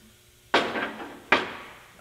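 Two sharp metallic clanks about a second apart, each ringing briefly: a freshly plasma-cut piece of steel plate striking a steel welding table.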